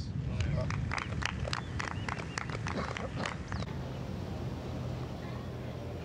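Light, scattered applause from a few spectators, about three or four claps a second, over a murmur of crowd voices. The clapping stops abruptly a little past the halfway point.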